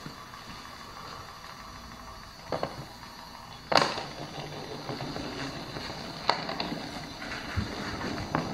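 A battery-powered toy hamster's small motor whirring as it rolls across a hardwood floor, with a few sharp knocks, the loudest a little under four seconds in.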